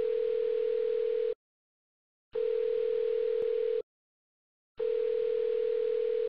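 Telephone ring tone: a steady single-pitched electronic tone sounding three times, each about a second and a half long with about a second of silence between.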